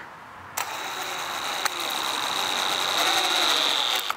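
Cordless drill motor running under load, driving a 5/8-inch hex-head lag screw into a wooden board through a Gator Grip universal socket. The steady whine starts about half a second in, grows slightly louder as the screw goes down, and cuts off at the end.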